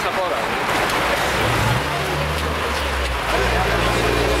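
A motor vehicle's engine running close by, its low steady hum coming in about a second and a half in, over the chatter of a crowd.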